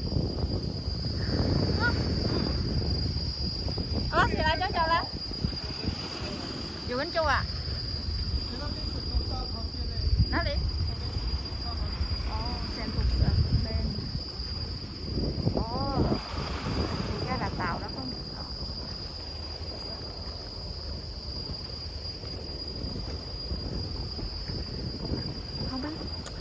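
Insects making a steady, high-pitched drone, over uneven low rumbling that sounds like wind on the microphone. A few brief faint voices come through now and then.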